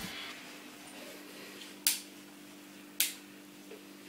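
Two sharp clicks about a second apart from a DSLR camera being handled, over a faint steady hum.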